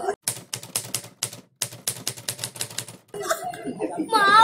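A fast, even run of sharp clicks, about eight a second, in two stretches with a short silent break between them.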